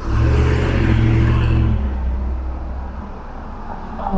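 A car driving past close by: engine hum and tyre noise come in suddenly, hold steady for about two seconds, then fade away.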